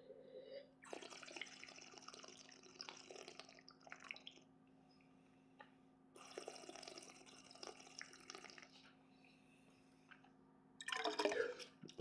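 Wine being drawn and swished through the mouth with air to aerate it while tasting: two faint, airy slurping stretches of about three seconds each.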